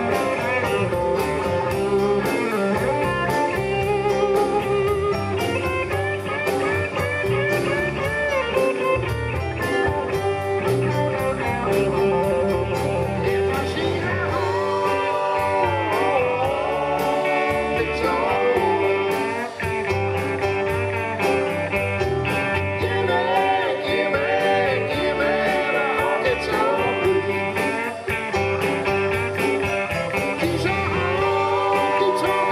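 Live blues-rock band playing an instrumental stretch, with an electric guitar lead over bass, drums and keyboards; the lead has bent notes from about halfway through.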